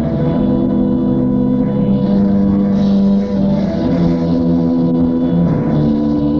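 Punk rock band playing live, with held, ringing guitar chords at a steady, loud level and no singing.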